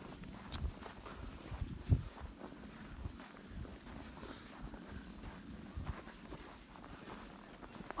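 Footsteps in snow, an irregular series of soft thuds, with one sharp thump about two seconds in.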